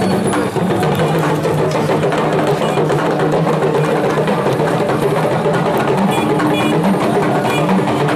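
Traditional West African percussion with a group of voices singing over it: the live music of an Egungun masquerade procession, loud and continuous.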